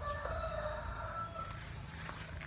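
A rooster crowing once: a drawn-out call of about a second and a half that keeps a fairly even pitch, over a steady low background hum.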